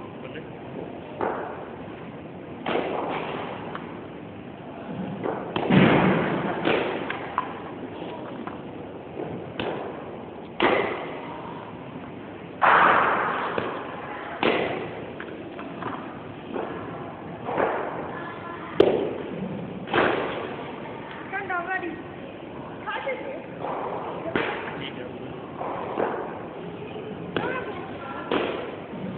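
Irregular sharp knocks and thuds, one every second or two, each with a brief echo: cricket balls being struck and landing during practice. Voices come and go between them.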